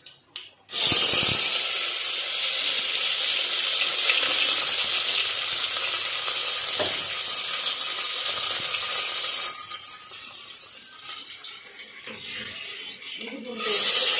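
A few sharp crackles of seeds popping in hot oil, then a loud, steady sizzle from under a second in as green leaves hit the oil in a clay pot. The sizzle dies down after about nine seconds, and a fresh loud hiss bursts up near the end as more is poured into the hot pot.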